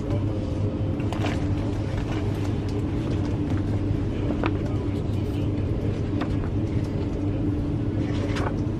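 Steady low rumble and hum inside a moving train carriage, with a few faint clicks and knocks.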